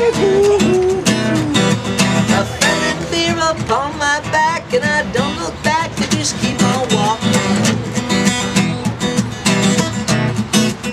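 Acoustic guitar strummed in a steady rhythm, with a voice singing a wavering melody over it for a few seconds in the middle.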